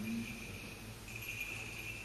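Quiet pause in a large church: a held chanted note dies away at the very start, then only faint room noise with a steady, thin high-pitched whine that grows louder about a second in.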